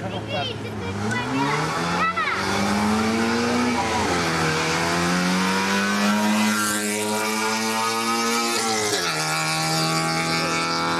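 Zastava Yugo rally car's engine held at steady revs on the start line, then launching about a second in and accelerating hard, its pitch climbing through the gears, with upshifts about four and nine seconds in.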